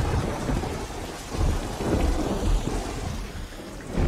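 Heavy rain pouring down, with thunder rumbling low beneath it, swelling about a second and a half in and fading toward the end.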